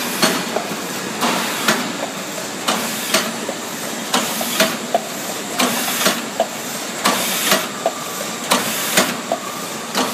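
MB-A60 paper doner kebab box forming machine running: a regular mechanical clatter of about two knocks a second as it cycles, over a steady hiss.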